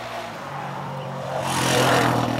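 Four-wheeler (ATV) engine running and drawing closer, growing louder to its loudest as it passes near the end.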